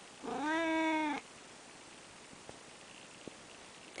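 Orange tabby cat giving one meow about a second long, shortly after the start, answering its owner's voice.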